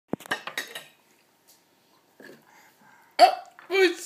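A click right at the start, then soft short vocal sounds. Near the end come two loud, brief, high-pitched vocal exclamations, the second one gliding in pitch.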